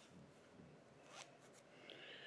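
Near silence, with faint rustling and a brief soft scratch about a second in, as hackle fibres are handled.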